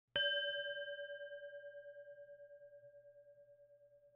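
A singing bowl struck once, ringing with a slow wobble in its tone and fading away over about three and a half seconds.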